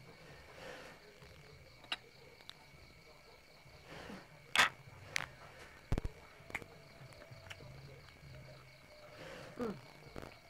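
Faint scattered clicks, taps and scrapes from eating with chopsticks and handling bamboo rice tubes, over a faint steady high-pitched whine. The sharpest click comes about four and a half seconds in, with a dull thud soon after.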